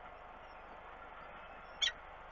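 A single short, high-pitched cheep from a downy peregrine falcon chick begging as it is fed, near the end, over a steady background hiss.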